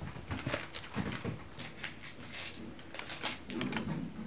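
A pet dog playing with its toy: scattered short clicks and small irregular noises.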